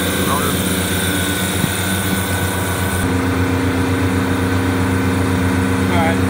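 Refrigeration condensing unit running, its compressor and condenser fan motors making a loud, steady mechanical hum with fan hiss. About halfway through, the high hiss falls away and a lower steady hum comes forward.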